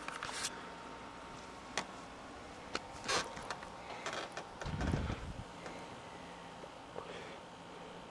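Handling noise from a handheld camera as it is moved: scattered sharp clicks and rubbing, and a louder low rumble about halfway through, over a faint steady background.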